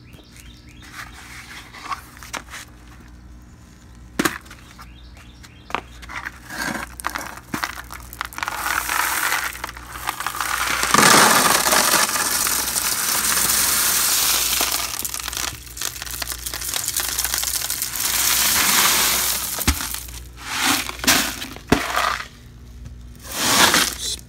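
Small smooth pebbles and gravel pouring from a plastic bucket into a black plastic preformed pond liner: a few light clicks at first, then a long, loud rushing clatter of stones on plastic, followed by several shorter pours near the end.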